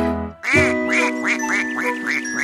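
Cartoon duck quacks in a quick run, about four a second, starting about half a second in after a brief gap in the music, over a held chord of children's song music.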